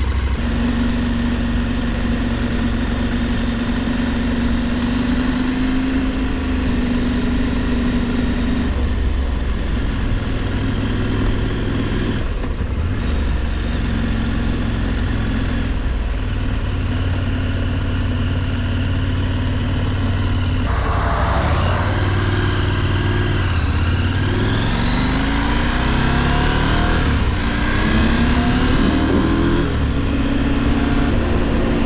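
KTM adventure motorcycle's parallel-twin engine running at a steady road speed, heard from the rider's seat. About two-thirds of the way through it accelerates, its pitch rising and dropping back at a couple of gear changes near the end.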